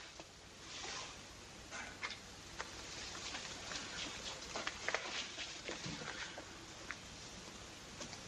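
Faint soundtrack hiss with a few soft scattered ticks and rustles; no speech or music.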